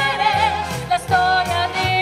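Female vocal trio singing in close harmony, with held and sliding notes, over a low bass line that steps from note to note.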